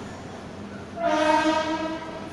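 A train horn sounds one steady, level-pitched blast of about a second, starting halfway through.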